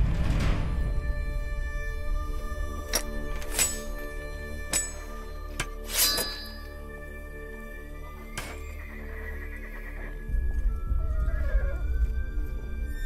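Film score with held tones and a low drum rumble. Over it come several sharp hits and clinks, as of weapons and armour being handled, and a horse whinnies near the end.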